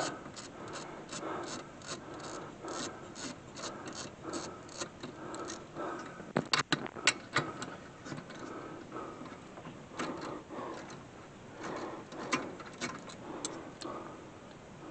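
Ratchet wrench clicking in short, even runs of about three clicks a second as a freshly loosened bolt behind the rear brake rotor is backed out. A few sharper metallic clicks come about six to seven seconds in.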